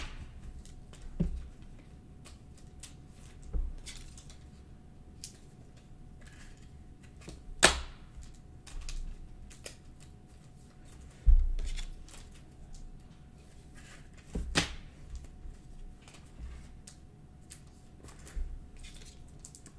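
Trading cards being handled and slid into thin plastic penny sleeves: soft rustling and small clicks of card and plastic, with about six sharper taps and knocks against the table spread through it.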